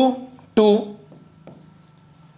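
A stylus scratching and tapping faintly on an interactive whiteboard's screen, drawing a bracket and writing "×2", with a few small ticks as it touches down; a man's voice says "two" briefly near the start.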